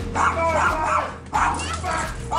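A small dog barking in short bursts, mixed with voices.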